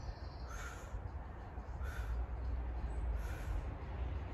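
A crow cawing three times, faint and evenly spaced about a second and a half apart, over a low steady rumble.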